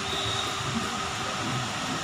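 Steady room noise with no speech: a constant hum and hiss like air conditioning.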